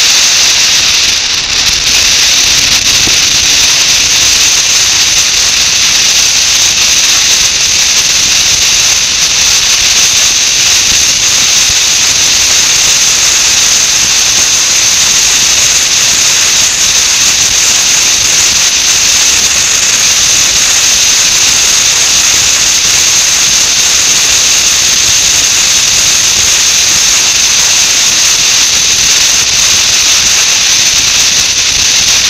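Loud, steady rush of wind over the microphone of a camera mounted on a moving motorcycle, a hiss that stays even throughout.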